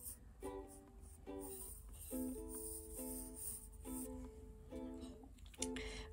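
Quiet background music of plucked string notes, played singly and in short runs of two or three.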